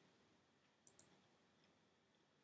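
Near silence, with two faint, quick computer mouse clicks about a second in, as a mouse button is pressed on an on-screen button.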